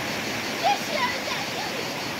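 Steady rush of a fast-flowing river. A few brief voice calls cut through it about half a second to a second in.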